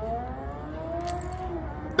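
A car driving along the street: its engine note slowly rising and then falling away, over a low traffic rumble.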